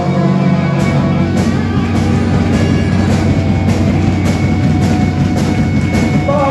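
Live rock band playing loudly: electric guitars holding chords, with the drum kit's cymbal and snare hits coming in just under a second in and keeping a steady beat.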